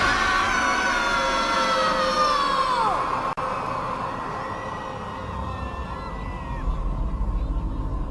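Dramatic show soundtrack: a held chord of several sustained tones that slides down in pitch about three seconds in and breaks off. A lower rumbling sound builds near the end.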